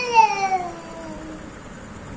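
A toddler's long drawn-out vocal sound, sliding down in pitch and fading out about a second and a half in.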